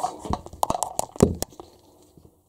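Tangled electrical cables and their plugs knocking and rattling as they are pulled apart by hand. It is a quick, irregular run of clicks and knocks that stops about a second and a half in.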